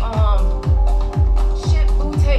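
House-style dance music played through the speakers, with a steady kick drum about two beats a second. A voice is heard over it near the start.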